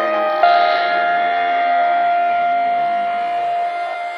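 Melodic techno breakdown: a synth chord held steady with no beat, one bright high note standing out above the rest.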